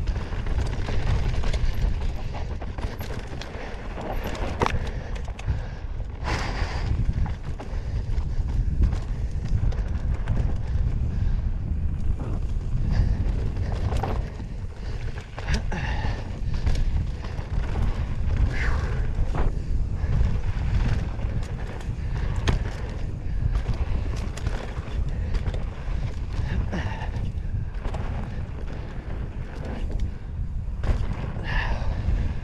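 Mountain bike riding fast down dry dirt singletrack: a steady rumble of wind on the microphone and tyres on dirt, with frequent sharp knocks and rattles from the bike as it hits bumps, roots and rocks.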